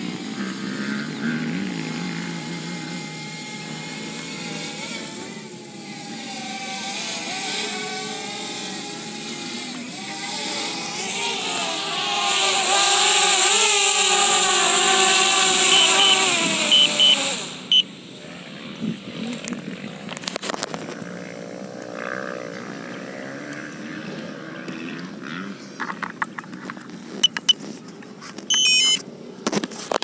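DJI Spark quadcopter's propellers buzzing as it descends to land on a low battery, the pitch wavering and the sound growing louder as it comes down close. The motors cut off suddenly about 17 seconds in, after which only scattered faint clicks remain.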